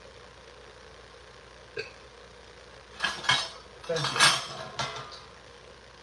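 Dishes and kitchen utensils clattering: a faint click about two seconds in, then two short bursts of clinks and knocks in the second half.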